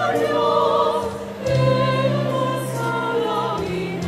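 Mixed choir with instrumental accompaniment singing long held notes with vibrato over a steady low bass, moving to a new chord after a brief dip about a second and a half in.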